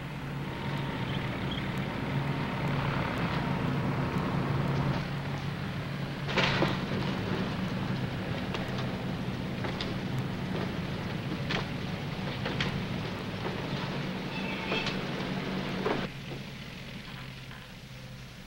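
Steady engine drone and noisy airfield background of an airport apron, with a few sharp knocks along the way; the sound drops suddenly about sixteen seconds in.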